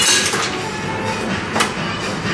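Background music over busy room noise, with a short sharp knock about a second and a half in.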